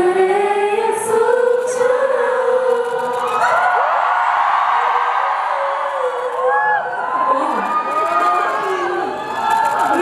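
A woman singing unaccompanied into a handheld microphone, with held notes; about three and a half seconds in, a concert audience breaks into cheering and high-pitched screams over it. Singing comes back near the end.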